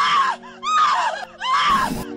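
A cartoon character's voice screaming in three short cries, each rising and falling in pitch, over background music.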